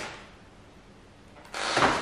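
A short knock, then near the end a brief scraping rustle as the dirt bike is shifted on its metal stand.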